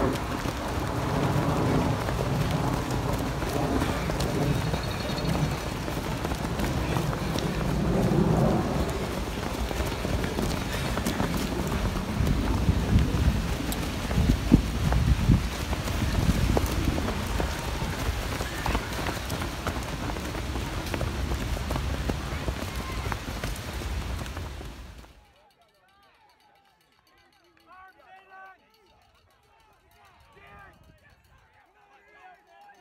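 Footsteps of a pack of cross-country runners passing close on grass strewn with dry leaves, many quick footfalls over a steady noise, with occasional shouting voices. About 25 seconds in it cuts off suddenly to near quiet with faint distant voices.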